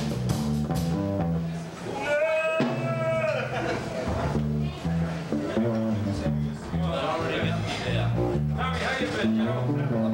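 Live band playing with electric guitars, bass and hand-played congas, a voice coming in over the music at times.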